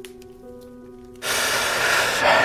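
Soft background music holding a few steady low notes. About a second in, a long breathy exhale starts over it, the sound of cigarette smoke being slowly blown out.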